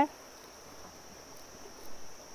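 Insects droning steadily in one high pitch, a continuous chorus with no breaks.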